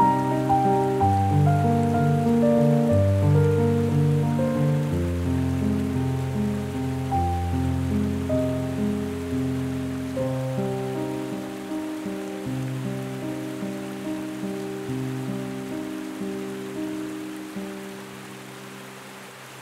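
Solo piano with heavy reverb playing a slow, steady succession of ringing notes, about two a second, getting steadily quieter.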